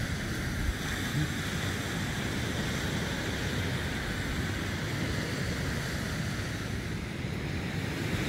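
Surf from a rough sea washing onto a sandy shore, a steady rush, with wind buffeting the microphone.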